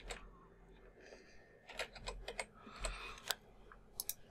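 Faint typing on a computer keyboard: about ten scattered keystrokes, most of them bunched between two and three and a half seconds in.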